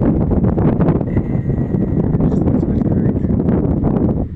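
Wind buffeting a phone's microphone outdoors: a loud, continuous low rumble.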